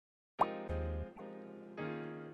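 Short musical logo jingle: after a brief silence, a quick upward-sliding pop, then three sustained notes in succession, with a deep bass note under the first.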